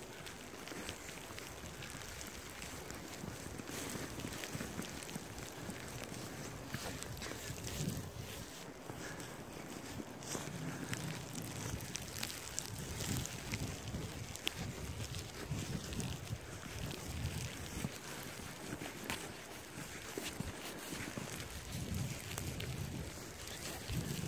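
Wind buffeting the microphone, with a rumble that swells and fades, and scattered soft clicks and crunches throughout.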